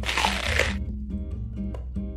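A crunchy bite into a burger with a crispy hash-brown patty, lasting under a second at the start, over background music with plucked-guitar notes.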